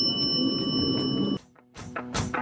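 Background music, with a steady high electronic beep from a toy game's push-button buzzer. The beep cuts off together with the music about one and a half seconds in, and after a short gap the music returns.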